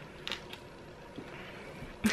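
Quiet room tone, a faint steady background hum, with a few small soft clicks, the clearest about a quarter second in.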